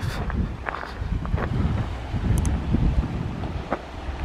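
Wind buffeting the camera's microphone: an uneven low rumble that rises and falls with the gusts.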